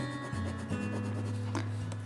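Coloured pencil rubbing back and forth on drawing paper while shading, over a low steady tone.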